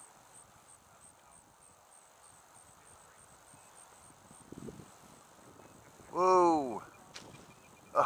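A person's single drawn-out wordless exclamation, its pitch rising then falling, about six seconds in, against an otherwise quiet background.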